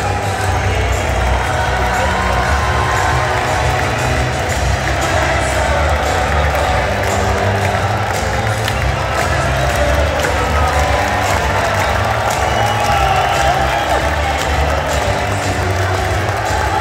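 Stadium crowd cheering and applauding while music with a heavy bass line plays over the stadium sound system, a steady wash of crowd noise with voices mixed in.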